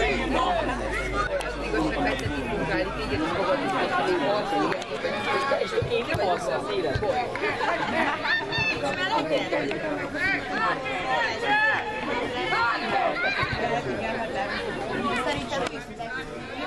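Many voices calling and shouting over one another, from the players and the sideline spectators of a children's football game, with no single clear speaker.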